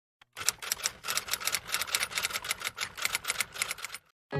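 Typewriter-style typing sound effect: a rapid, uneven run of key clicks, several a second, starting about a third of a second in and stopping abruptly at the end.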